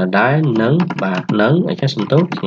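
Computer keyboard typing: scattered key clicks under a man talking.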